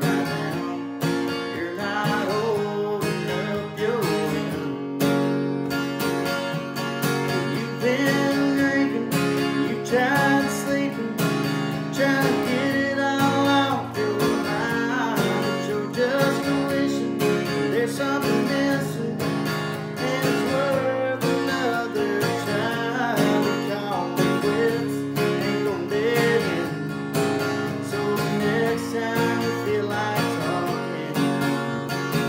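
Acoustic guitar with a capo strummed steadily, accompanying a man singing a country song.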